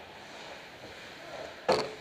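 Ice hockey play in an indoor rink: a steady hiss of skating, then one sharp, loud crack near the end from a stick-and-puck impact, ringing briefly in the arena.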